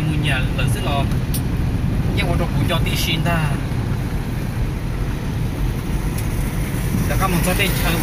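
Steady low road and engine rumble inside the cabin of a moving vehicle, with a man speaking in short stretches over it.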